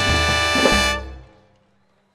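Live tropical dance orchestra holding the final chord of a song, with brass on top and bass notes underneath. It cuts off about a second in and dies away.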